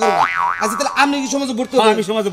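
A cartoon 'boing' comedy sound effect: a quick sweep in pitch that drops and then wobbles up and down, over the first second. It is followed by a man's voice.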